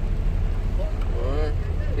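Steady low rumble of a Daewoo Tico's small three-cylinder engine idling, heard inside the cabin, with a man's voice briefly in the middle.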